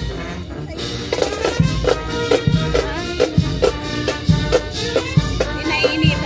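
Marching brass band playing: a brass melody over a steady bass-drum and snare beat, with sousaphones in the low end.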